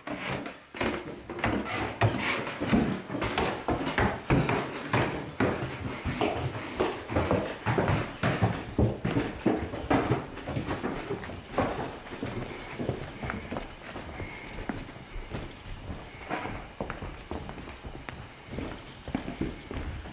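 Footsteps and irregular knocking and clattering in a room with a wooden floor. The knocks are busiest and loudest in the first half and thin out after that.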